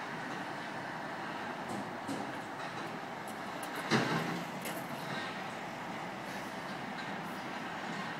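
Steady background noise of engines and machinery on a fairground being set up, with one loud bang about four seconds in that rings briefly.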